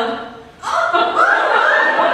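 Audience laughing, starting about half a second in after a line of dialogue ends.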